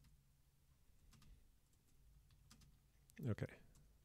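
Computer keyboard typing: a few faint, scattered keystrokes.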